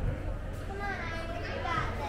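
Children's high-pitched voices calling out in a climbing gym, over a steady low hum of room noise.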